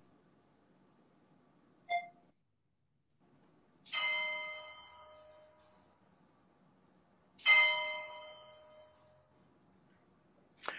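A bell struck twice, about three and a half seconds apart, each stroke ringing out and fading over a couple of seconds. A brief short tone sounds about two seconds in, before the first stroke.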